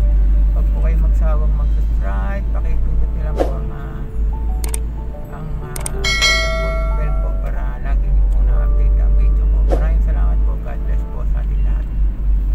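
Background music with singing over the low rumble of a car on the road. About six seconds in, a bright bell chime rings for about a second: a subscribe-button sound effect.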